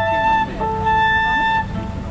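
Flute holding the closing long notes of a piece over cello and keyboard; the music ends about one and a half seconds in.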